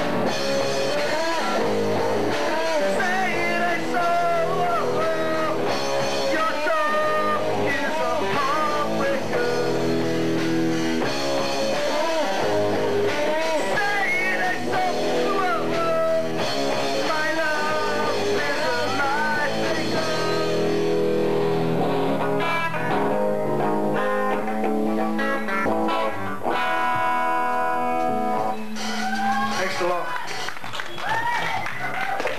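Live rock band playing electric guitars and a drum kit, with a singer. The playing grows sparser in the last third.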